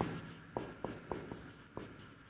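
Marker pen writing on a whiteboard: a handful of faint, short taps and scratches of the tip as letters are written.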